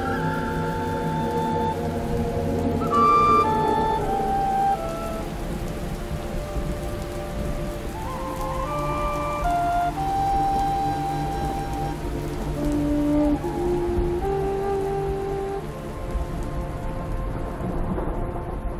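Steady rain falling on water under slow background music, a melody of single held notes over a low sustained bed.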